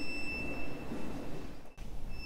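Solo violin holding one very high, quiet note that fades away about a second in. There is a brief break just before the end.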